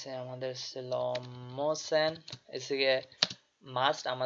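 Computer keyboard typing, a few sharp key clicks, mixed with a voice speaking in long drawn-out sounds.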